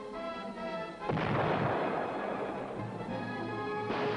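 Orchestral film score with a single loud explosion about a second in, a sudden boom that dies away over a second or so while the music carries on into a low held note.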